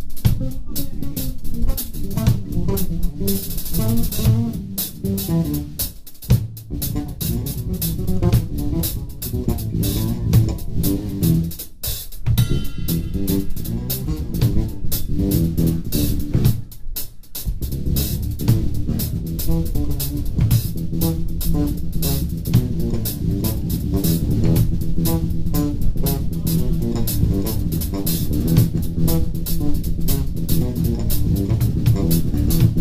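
Live jazz-fusion band: a busy electric bass line over a drum kit with steady cymbal work, loud throughout, with brief dips about 12 and 17 seconds in.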